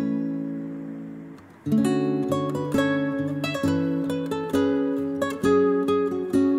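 Background music on acoustic guitar: a chord rings out and fades for nearly two seconds, then plucked notes and chords follow about twice a second.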